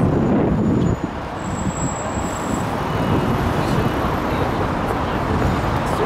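Steady outdoor road-traffic noise, a continuous low rumble of passing cars, dipping briefly in level about a second in.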